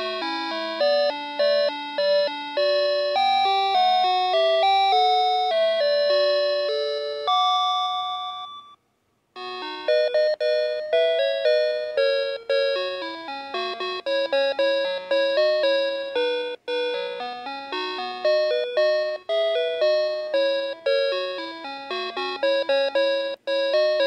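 Playskool Storytime Gloworm toy playing electronic lullaby melodies note by note; one tune ends about eight seconds in and, after a brief pause, the next begins.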